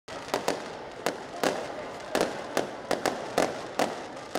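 Aerial fireworks exploding: about nine sharp bangs at irregular intervals, each with a short echo, over steady background noise.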